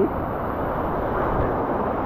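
Steady rushing of a waterfall pouring into a pool, with water sloshing close by.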